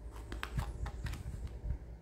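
Tarot cards being handled and set down, a string of about seven light clicks and taps.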